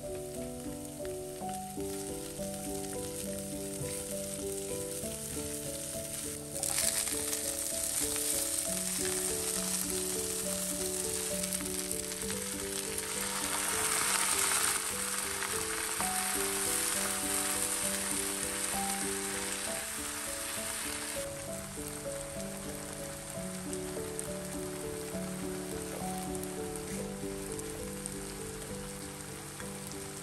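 Stir-frying in a frying pan: sliced shallots, garlic and chilies, then water spinach, sizzling in hot oil. The sizzle jumps up suddenly about a fifth of the way in, is loudest near the middle, and eases back about two-thirds through. Soft background music plays throughout.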